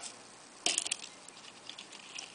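Tweezers clicking and scraping against a clear plastic cup while gripping a scorpion: a short cluster of sharp clicks about two-thirds of a second in, then a few faint ticks.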